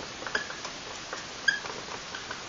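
Marker pen squeaking on a whiteboard as a word is written: a few short, high squeaks, the clearest about one and a half seconds in.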